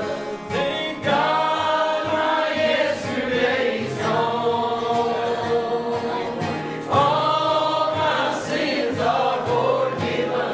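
A church congregation and song leader singing a gospel song together to acoustic guitar accompaniment, in long held notes, with new phrases swelling in about a second in and again near seven seconds.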